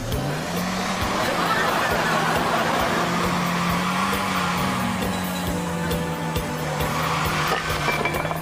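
Car engine revving up just after the start, then running at a fairly steady pitch as the car drives along.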